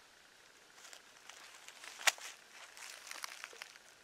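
Dry leaf litter crackling and rustling faintly as a bobcat carcass is shifted by hand on the ground, with one sharp click just after two seconds in.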